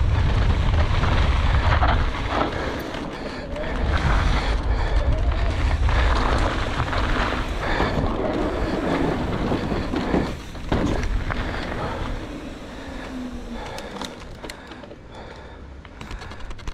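Wind buffeting the action camera's microphone and knobby tyres rolling fast over dirt and gravel on a descending mountain bike, with scattered clicks and knocks from the bike. About ten seconds in the noise drops briefly, then surges again as the bike comes off a wooden ramp. Near the end it dies down as the bike slows on tarmac.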